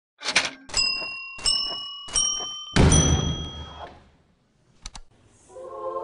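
Logo intro sound effect: five sharp hits, the later ones each ringing with a tone a little higher than the last, the fifth the loudest with a deep boom that dies away over about a second. After a brief pause and a quick double click, a sustained musical chord fades in near the end.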